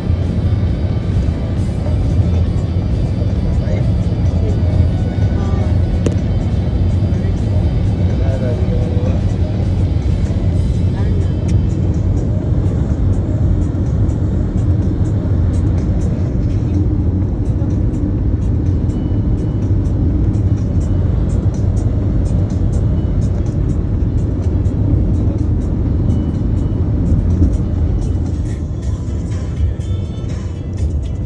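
Steady road and engine rumble inside a moving car at highway speed, with music and singing playing over it.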